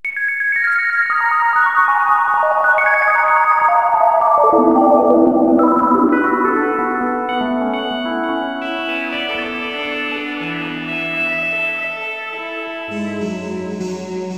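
Computer-generated synth music: Sonic Pi playing a fast stream of random minor-pentatonic notes through an external Korg X5DR synth module layered with its own internal synths, with the voices changing as it goes. It starts suddenly, and the notes step downward over the first few seconds, then spread over a wider range, with deeper bass notes coming in near the end.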